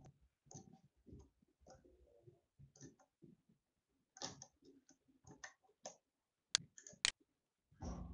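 Faint, irregular clicks of a computer mouse, its buttons and scroll wheel, with two sharper clicks about six and a half seconds in and half a second later.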